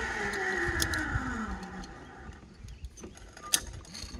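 Zip line trolley whirring along the steel cable, its pitch falling steadily as it runs away and fades out after about two seconds. Sharp metal clicks of carabiners and lanyard clips come a little under a second in and again near the end.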